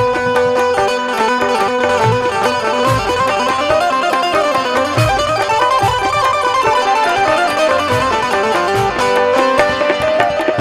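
Instrumental qawwali passage with no singing: a quick melodic run of notes on the harmonium over sparse low tabla strokes.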